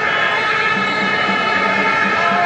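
Football stadium crowd noise dominated by a steady, many-voiced drone of horns blown in the stands, holding one even pitch throughout.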